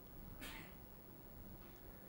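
Near silence: room tone in a lecture room, with one faint, short hiss about half a second in.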